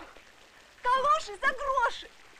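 A high-pitched voice making short, wavering wordless cries, in two or three pulses during the second half.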